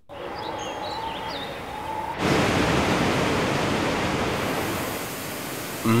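Steady rushing noise of water sprays and machinery in a copper ore flotation plant, growing louder about two seconds in.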